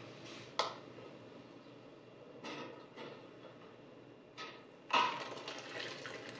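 Kitchen utensils and jars being handled: a few short knocks and clinks, the loudest about five seconds in, over a low steady hiss.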